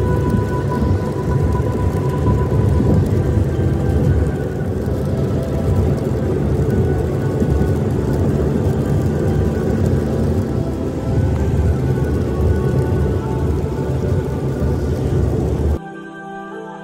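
Low rumbling road and rain noise from inside a car driving on a wet highway, with background music playing over it. The rumble cuts off suddenly near the end, leaving the music alone.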